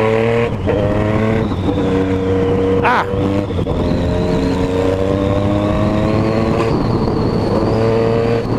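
Yamaha MT-09's inline three-cylinder engine running under light load on the move, its pitch climbing slowly with a few brief drops, over steady wind rush on the microphone.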